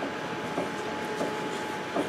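Airbus A350-900 cabin noise while taxiing: a steady hum carrying two faint steady tones, broken by three thumps at roughly even spacing as the wheels roll over the taxiway surface.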